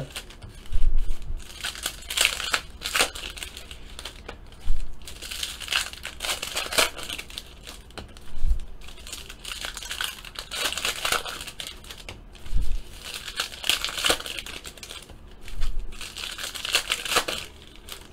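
Foil wrapper of a trading-card pack crinkling and tearing as it is opened by hand, in irregular bursts.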